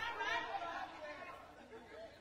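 Faint speech and chatter, fading away over the two seconds.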